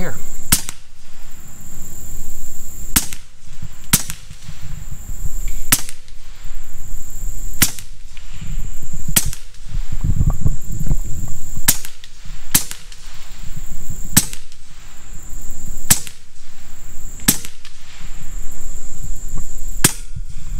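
Huben K1 semi-automatic PCP air rifle in .25 calibre fired in a string of about a dozen shots, one to two and a half seconds apart, each a sharp crack. The shots empty its 17-round magazine. A faint steady high buzz runs underneath.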